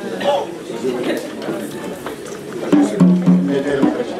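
Crowd chatter from many guests in a large hall. About three seconds in, a short burst of low, steady musical notes sounds over the chatter for about a second.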